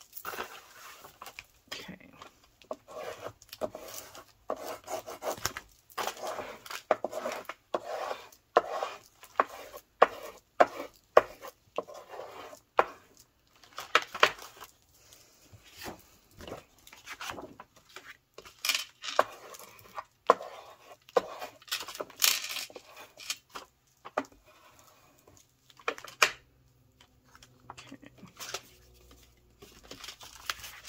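Hands rubbing and pressing glued paper flat onto a journal page on a craft table, with paper rustling and many sharp taps and clicks, thickest in the middle stretch.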